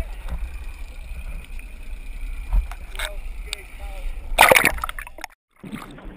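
Seawater sloshing and gurgling around a GoPro camera housing bobbing at the sea surface, over a steady low rumble, with one loud splash about four and a half seconds in.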